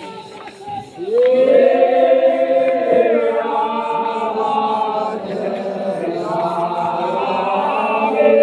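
A group of men chanting together in a Toraja funeral chant, many sustained voices. A louder swell of voices comes in about a second in, sliding up in pitch.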